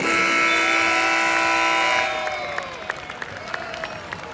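Basketball arena's end-of-game buzzer sounding one steady, multi-tone blast for about two seconds as the game clock hits zero, then cutting off suddenly. Faint squeaks and short taps follow.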